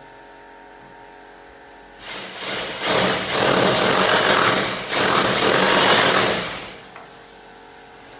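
Corded hammer drill boring into a painted masonry wall. It starts about two seconds in, runs for about five seconds with a short let-up halfway, then stops, leaving a faint steady hum.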